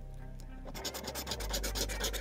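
A metal scratcher coin scraping the scratch-off coating from a Monopoly lottery ticket in rapid back-and-forth strokes, starting about two-thirds of a second in.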